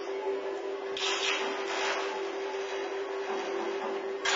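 Experimental live electronic music: a steady held drone tone with short, noisy hissing rasps breaking in over it about a second in and again shortly after.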